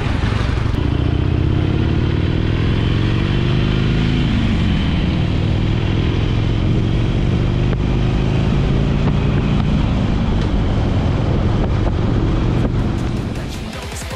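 Harley-Davidson Iron 883's air-cooled V-twin engine running under way, over a steady rush of wind. Its pitch rises for the first few seconds, drops about four seconds in, then climbs slowly again, and the sound fades near the end.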